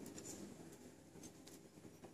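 Near silence: room tone with a few faint light clicks.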